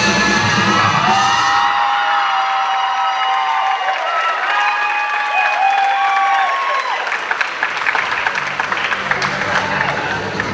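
Band music ends about a second and a half in, and an audience cheers with high whoops and shouts. Applause with many hands clapping fills the second half.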